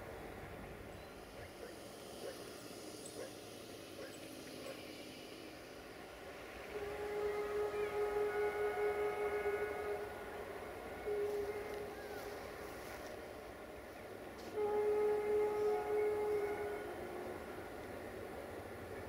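Horn of the approaching diesel locomotive, class 65 "Jimmy" 65-1300-6 hauling R3651: a long blast, a short one, then another long one, each a steady chord of several tones.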